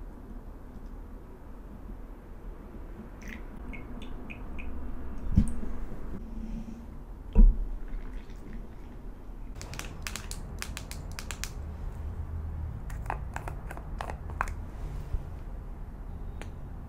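Hot water poured from a gooseneck kettle into a ceramic pour-over coffee dripper, with two sharp knocks a couple of seconds apart. In the second half there are quick runs of sharp clicks and taps.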